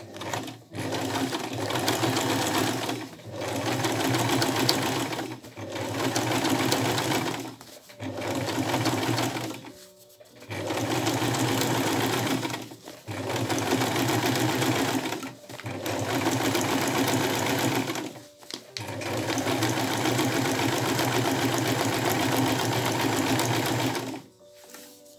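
Old sewing machine stitching appliqué in runs of two to three seconds, stopping briefly about eight times between runs.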